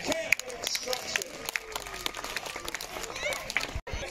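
Spectators applauding, a spread of many hand claps with voices mixed in, cut off abruptly just before the end.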